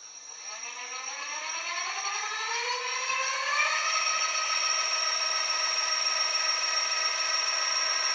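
Planetary-geared 36 V 500 W e-bike rear hub motor spinning up under power with the wheel off the ground: a whine that rises in pitch and grows louder over the first four seconds or so, then holds steady at speed with a thin high tone on top. The gear whine is the normal sound of a planetary-gear hub motor.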